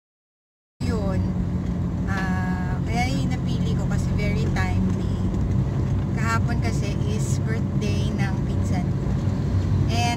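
Near silence for almost a second, then the steady low hum of a car heard from inside the cabin, with a woman talking over it.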